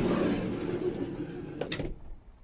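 Sliding side door of a Mercedes Sprinter van rolling open along its track, a dull, even rumble that fades, with two sharp clicks near the end.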